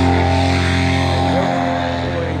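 Paramotor engine and propeller running at high throttle during takeoff, holding a steady pitch and easing slightly near the end.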